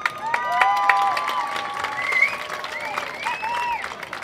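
Crowd applauding, with several voices whooping and yelling over the clapping.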